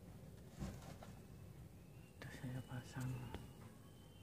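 Faint, low murmuring of a person's voice about two to three seconds in, with a few small clicks of handling.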